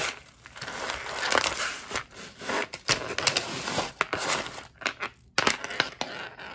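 Hands rummaging through a pile of costume jewelry: a busy rustle with many small clicks and clinks of beads and metal chain, broken by a brief pause about five seconds in.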